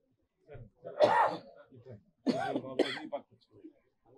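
A man coughing and clearing his throat in two short bursts, about a second in and again at about two and a half seconds, with a few low murmured words around them.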